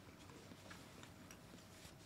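Near silence: room tone with a few faint, light clicks.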